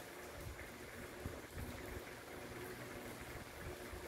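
Quiet background noise: a faint steady hiss and low rumble with no distinct sound standing out.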